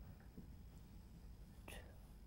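Near silence: studio room tone with a faint low hum, and a brief faint breathy hiss near the end.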